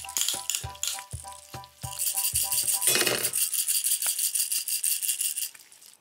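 Small plastic toy salt and pepper shakers rattling as they are shaken. First come a few separate shakes, about three a second, then a fast, continuous rattle from about two seconds in that dies away shortly before the end.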